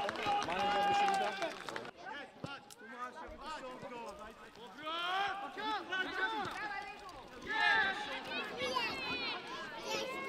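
Men's voices shouting and calling out during a football match: a long drawn-out call in the first two seconds, then scattered shouts, loudest about eight seconds in.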